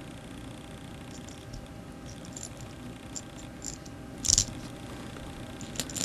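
Metal washers being fitted onto a bolt by hand: light fumbling noise with faint scattered clicks, one sharper click about four seconds in and a few more near the end.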